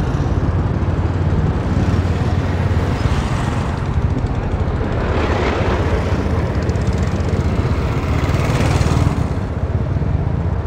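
Steady road noise while riding through town traffic: a vehicle's running engine and wind rushing on the microphone. The noise swells briefly about halfway through and again near the end.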